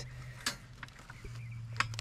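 Faint clicks from pressing the charge-indicator button and handling the plastic housing of a Toro battery backpack, one about half a second in and another near the end, over a low steady hum.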